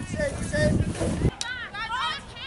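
Voices shouting on an outdoor playing field, several high-pitched calls, over a low rumble of wind and background noise. The rumble cuts off abruptly a little over a second in, with a sharp click.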